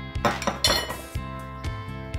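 A short scraping clatter of tableware against the wooden pizza board, about half a second in, over steady background music.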